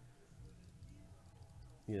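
Near silence: faint room tone in a pause in a man's talk, with his voice coming back in right at the end.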